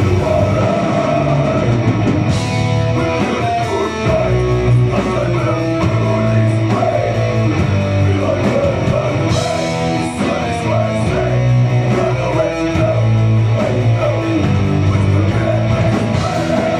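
Rock band playing live: electric guitars riffing over drums, with crash cymbals struck about two and a half and nine and a half seconds in.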